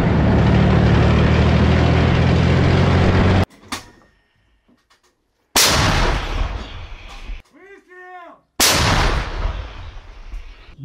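A 2S9 Nona-S 120 mm self-propelled gun's engine running steadily for about three and a half seconds. Then the gun fires twice, about three seconds apart, each a sudden loud blast that fades away.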